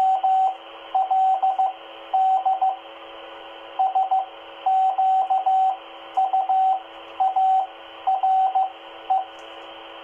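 Morse code (CW) practice sent at about 11 words a minute over a 2-meter FM amateur repeater, heard through a handheld transceiver's speaker. A single steady tone is keyed in dots and dashes, in groups with short pauses between them, over constant radio hiss.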